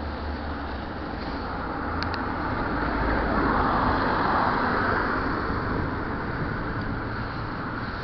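Wind and road rumble on a moving action camera: a steady low rumbling noise that swells louder for a couple of seconds in the middle, with two faint clicks a couple of seconds in.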